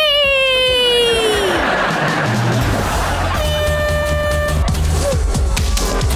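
Background music: a long falling note at the start, a sweeping whoosh, then an electronic track with a steady low beat and a held synth tone.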